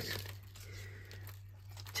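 Faint rustling of paper and card stock as die-cut card pieces and a finished card are picked up and handled.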